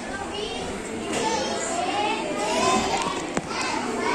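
A group of young children chattering and calling out at once, many high voices overlapping, with one sharp click about three and a half seconds in.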